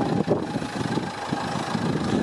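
Dacia Duster's 1.5 dCi diesel engine idling, an uneven low clatter.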